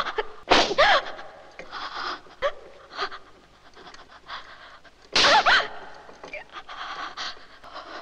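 A woman's sharp, breathy cries of pain, one about half a second in and a louder one about five seconds in, with quick panting breaths and gasps between them, as from a flogging.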